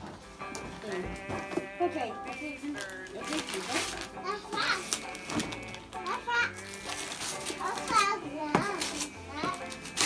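Children's voices and excited chatter over steady background music, with wrapping paper rustling and tearing as a present is unwrapped.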